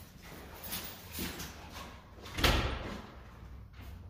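Scattered knocks and handling noises, with one loud thump about two and a half seconds in that rings briefly in a large hard-floored room.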